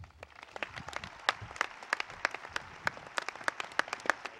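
Crowd applauding, with many separate, irregular hand claps standing out over a steady wash of clapping.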